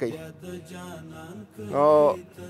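Background vocal chanting over a steady low held drone, with one short, louder vocal sound near the end.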